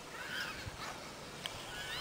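Children's high-pitched squeals while sledding: two or three short calls that rise and fall in pitch, with a brief click in the middle.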